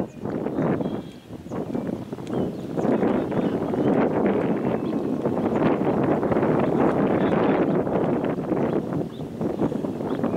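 Wind buffeting the microphone, an uneven rushing noise that swells and dips throughout.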